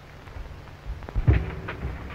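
Hiss and crackle of an early sound-film optical soundtrack between lines, with a low thump about a second in and a brief faint voice-like sound just after.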